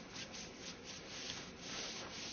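Paintbrush stroking paint onto a sheet of cartridge paper: a soft, quick, repeated scratchy brushing, about four or five strokes a second.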